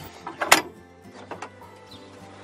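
Cargo trailer's rear door swung open on its steel lock bar: one sharp metallic clank about half a second in, then a few lighter knocks, over faint background music.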